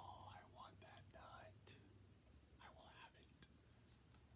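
A man's faint whisper, breathy and unvoiced, in two short stretches: at the start and again about three seconds in, over a low steady hum.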